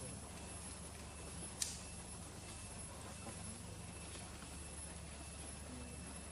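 Quiet outdoor ambience with a steady low hum and faint distant voices, broken by one sharp click about a second and a half in.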